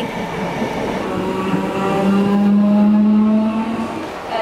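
Electric train at a station platform: a steady motor whine, a hum with higher tones above it, growing louder from about a second in and easing slightly near the end.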